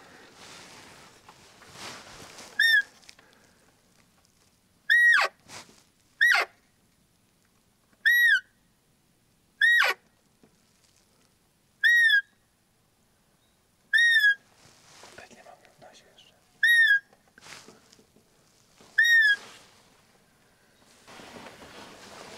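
Roe deer call (hunter's lure call) blown in about nine short, high piping whistles, each rising and then falling in pitch, one to three seconds apart. It imitates a roe doe's call to draw a buck in.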